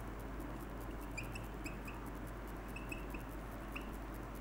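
Marker squeaking on a whiteboard while a word is written: short high squeaks in two clusters, about a second in and again near the end, over a steady background hiss.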